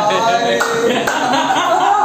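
A group of men laughing and calling out, with two sharp hand claps about half a second apart near the middle.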